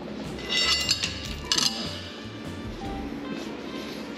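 Steel lifting chain clinking and jingling against a forklift fork for about a second, starting about half a second in, over background music.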